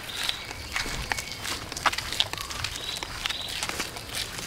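Footsteps of several people walking on a concrete road, a run of short scuffs and taps, with a few brief high bird chirps in the background.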